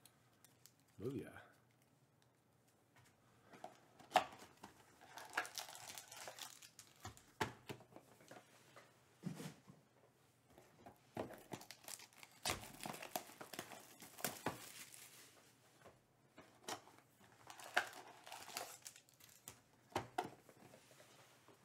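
Crinkling and tearing of trading-card packs and cardboard box packaging being handled and opened, in scattered bursts of rustling with small clicks.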